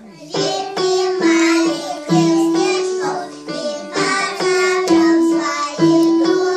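Small children singing a song together in short phrases, with a musical accompaniment under their voices.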